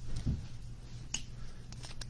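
Stadium Club Chrome baseball cards being flipped from the front of a hand-held stack to the back, with a few faint clicks as the card edges snap past each other, the clearest about a second in.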